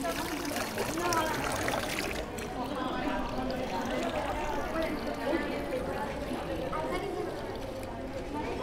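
Water running from a street-fountain tap, splashing over hands into a stone basin, with voices chattering in the background.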